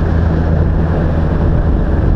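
Motorcycle running steadily at cruising speed, a low, even engine hum under the rush of wind and road noise on the microphone.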